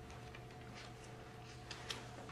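Chalk on a blackboard as equations are written: faint short taps and scratches at an uneven pace, a little louder near the end, over a steady low room hum.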